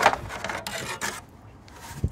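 Plastic engine cover of a 5.0 Coyote V8 being pulled up off its push-pin mounts: a snap at the start, then scraping and rubbing of plastic twice.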